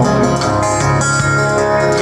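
Live band music: a strummed acoustic guitar with an electric guitar, playing a short instrumental stretch between sung lines of a country-style song.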